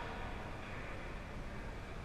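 Steady background rumble and hiss of an indoor ice rink, heaviest in the low end, with no distinct events.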